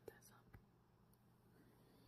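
Near silence: faint room tone, with two soft clicks in the first half second or so.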